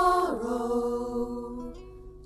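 Singing from a 1970s church folk group recording: a long held note slides down about a third of a second in, then is held and slowly fades away.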